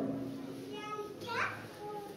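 Faint voices in a hall after the main speaker pauses, one rising briefly in pitch about a second and a half in.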